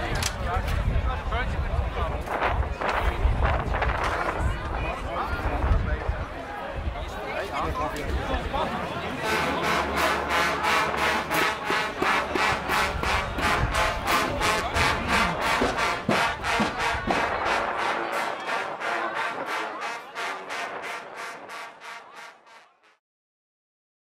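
Outdoor crowd noise with voices for the first several seconds. Then music with a fast, steady beat takes over and fades out shortly before the end.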